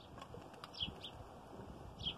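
Faint small-bird chirps, a few short notes about a second in, over quiet ticks and scraping of a knife working a wooden stick.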